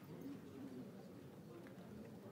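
Faint murmur of people talking quietly in a large hall, with no clear words and a few light clicks.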